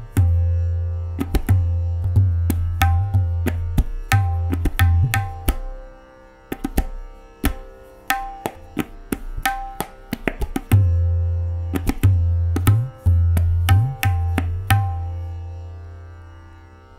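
Tabla playing the sixteen-beat teentaal theka with filler bols at single speed (ekgun): crisp ringing strokes on the tuned right-hand dayan over the deep booming left-hand bayan. The bayan's bass drops out for about four seconds in the middle, the khaali section of the cycle, and comes back for the closing beats.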